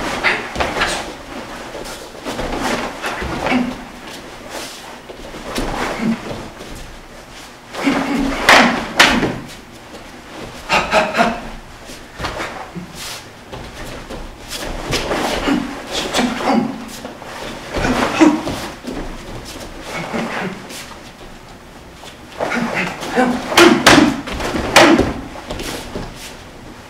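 Karate shadow boxing in bursts of combinations with short pauses between: forceful exhaled breaths and grunts on the strikes, sharp snaps and slaps, and bare feet thudding and shuffling on a wooden floor.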